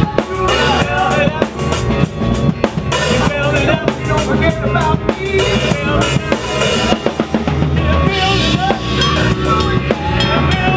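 Live rock band playing a song: electric guitars and a drum kit with a steady kick and snare beat.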